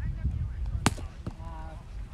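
A sharp slap of the roundnet ball being struck during a rally, about a second in, followed by a fainter knock, then a brief shouted call from a player over a low outdoor rumble.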